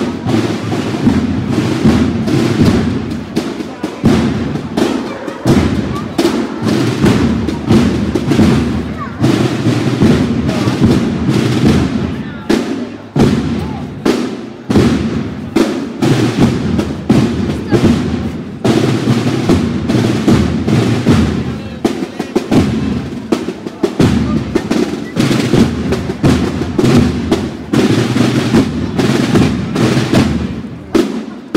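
A marching procession band's drums, snare and bass drum, playing a steady march beat as the band walks.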